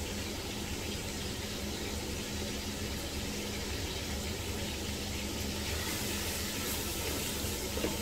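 Onion and tomato masala sizzling steadily in hot oil in a pot on a gas stove, over a low steady hum.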